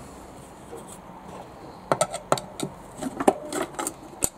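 Quiet for the first two seconds, then a quick run of sharp clicks, taps and scraping as a screwdriver pries at the clips holding the cover of an LED streetlight housing.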